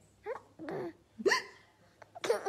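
A baby hiccuping: three short, squeaky hiccups in quick succession, the last one the loudest.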